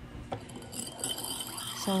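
Metal spoon knocking and clinking against a ceramic bowl while stirring a thin soy sauce mixture: one knock about a third of a second in, then light ringing clinks.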